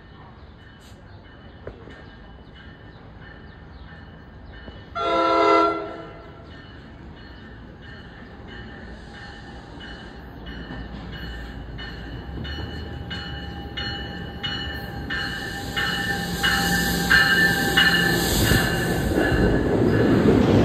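NJ Transit push-pull train of MultiLevel coaches arriving: one short horn blast about five seconds in, then the rumble of the train and the clicking of its wheels over rail joints grow steadily louder as it pulls in alongside the platform. A high hiss joins in for the last few seconds.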